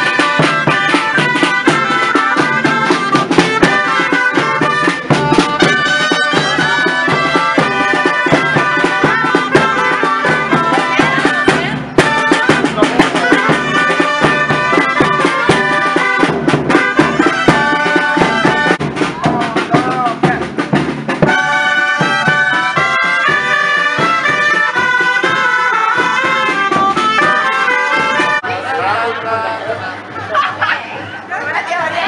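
Gralles, the loud Catalan double-reed shawms, playing a brisk traditional melody in several parts over a steady drum beat. There is a brief break about twelve seconds in, and near the end the music gives way to crowd chatter.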